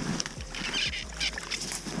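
Faint scuffing and rustling with a few light, scattered taps: a fish being hauled up out of an ice-fishing hole and onto the snow.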